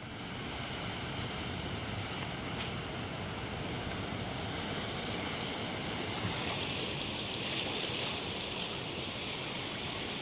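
Ocean surf washing on a beach: a steady rushing noise that swells slightly about two-thirds of the way through.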